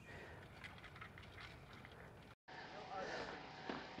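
Faint ticking and rubbing of the CrankIR antenna's hand-cranked reel winding steel wire in and paracord out. About two and a half seconds in, it cuts off abruptly to faint outdoor background.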